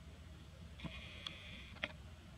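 A high, bleat-like animal call lasting about a second, starting just under a second in, with three sharp clicks around it, the last one the loudest.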